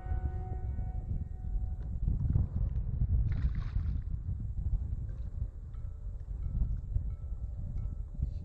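Wind buffeting the microphone on an open kayak, a steady low rumble, with a short hiss about three seconds in. Background music fades out in the first second.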